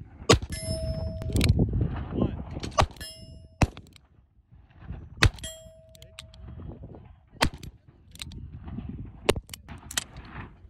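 Smith & Wesson Model 648 revolver in .22 WMR firing single shots one to two seconds apart. Several shots are followed a moment later by the ringing clang of a hit steel target.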